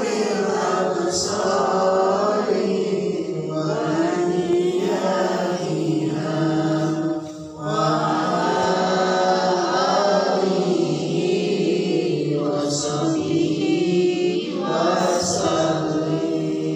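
A group of women chanting a recitation together in unison, in a slow melodic line, with a brief pause for breath about halfway through.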